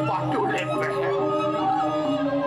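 A performer's stylized singing voice, wavering and gliding in pitch, over Balinese gong kebyar gamelan accompaniment with held notes.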